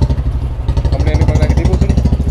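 Motorcycle engine idling, loud and steady with a rapid, even putter, with faint voices in the background.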